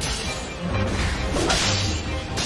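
Animated sword-fight sound effects: blade swishes and strikes, one at the start and a stronger one about one and a half seconds in, over dramatic background music.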